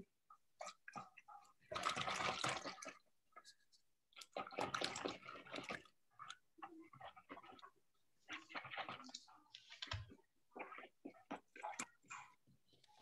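A hand mixing flour into cold salted water in a bowl to make arepa dough, heard through a video call as faint, irregular wet swishes that come and go.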